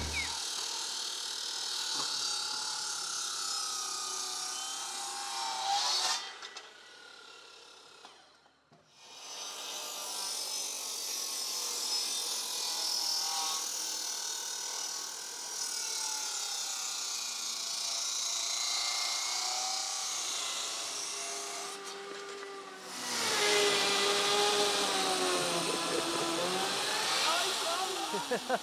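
Power saws cutting through heavy timber beams: a steady cutting noise whose pitch wavers as the blade is fed through the wood. It breaks off to near silence for a couple of seconds about seven seconds in, and comes back louder for the last few seconds.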